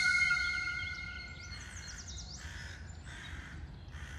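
Village ambience for an establishing shot: two steady ringing tones fade out over the first second and a half above a low steady background, then short bird calls about two seconds in.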